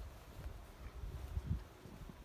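Faint, uneven low rumble of wind on the microphone outdoors, with no distinct event.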